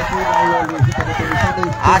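A man commentating on the game, talking continuously.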